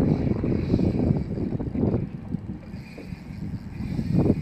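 Wind buffeting the microphone over open water: an uneven low rumble, louder in the first two seconds and easing off about two and a half seconds in.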